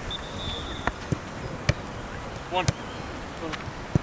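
A football being kicked and headed back and forth in a keepy-up drill: short thuds of the ball about once a second, four in all, with a man counting the touches aloud.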